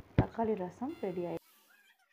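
A woman's voice speaking for about a second, with a short knock at its start. Then the sound cuts off abruptly to near silence with faint high chirps.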